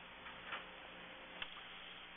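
Quiet meeting-room tone with a faint steady hum and two faint ticks, about a half second in and near the end.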